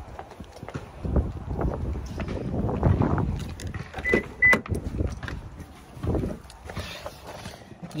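Rustling and scraping handling noise from a phone rubbing against a dress as it is carried while walking, with scattered knocks. Two short high beeps sound close together about halfway through.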